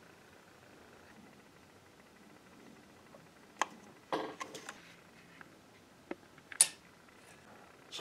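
Quiet room tone broken by a few light clicks and knocks from handling a Bolex H16 movie camera and a steel tape measure. There is one click a little past three and a half seconds, a short cluster just after four seconds, and the sharpest click about six and a half seconds in.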